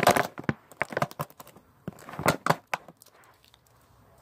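Crinkly packaging wrapping being handled off a small action-figure accessory: a quick run of crackles and clicks that stops a little under three seconds in.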